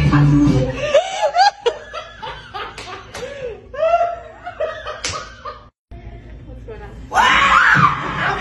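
Dance music stops abruptly about a second in, leaving giggling laughter punctuated by a few sharp smacks. After a brief dropout, music starts again near the end.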